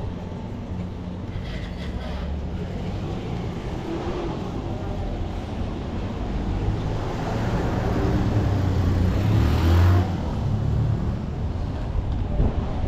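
Street traffic: a motor vehicle's engine rumble builds over several seconds to its loudest about ten seconds in, then drops off suddenly, over a steady background of city street noise.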